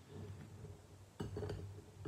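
Metal spoon stirring lemon peels and sugar in a glass bowl: faint scraping, with a light clink of spoon on glass a little over a second in.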